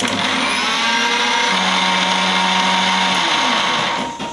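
Electric mixer grinder (mixie) switched on at its knob, its motor running steadily at speed with a whine as it grinds palmyra sprout pieces into powder in its jar. It starts abruptly and eases off near the end.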